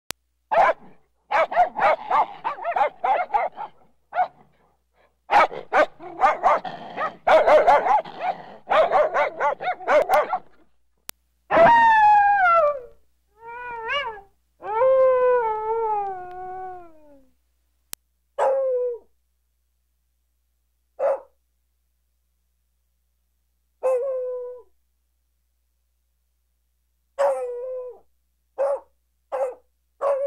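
Dog vocalizations. First comes about ten seconds of rapid, clustered barking, then a few drawn-out howling calls that fall in pitch, then short single calls spaced a few seconds apart.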